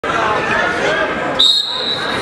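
Voices and crowd chatter echoing in a gym, then about one and a half seconds in a referee's whistle sounds one short, steady, high blast.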